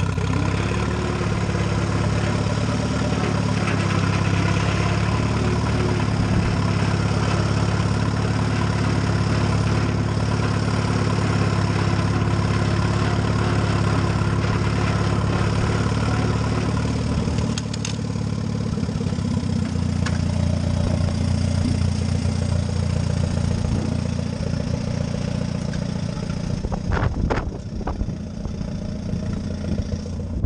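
Allis-Chalmers WD tractor's four-cylinder engine running steadily while pulling a box blade. A little over halfway through, its note drops and changes, and a few sharp knocks come near the end.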